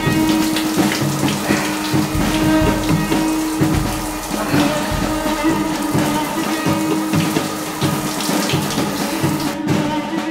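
Shower spray running steadily, cutting off just before the end, mixed with a musical score that holds a steady low tone over repeated low thuds.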